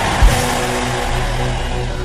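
Church keyboard holding a sustained chord, with one low bass thump about a quarter second in, under a congregation shouting and cheering with arms raised.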